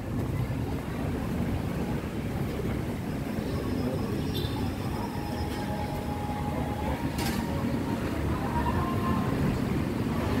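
Busy street traffic: a steady low rumble of vehicle engines and tyres close by, with a brief hiss a little after seven seconds in.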